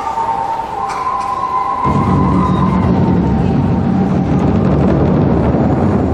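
Japanese taiko ensemble playing: a high held tone sounds over the first couple of seconds, then about two seconds in the drums break into a dense, continuous low roll that builds and holds.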